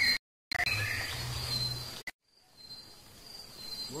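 Forest ambience with insects chirring in a steady high-pitched tone, over a low rumble on the microphone. The sound cuts to dead silence briefly near the start and again about halfway through, and after the second cut only the quieter insect chirring remains.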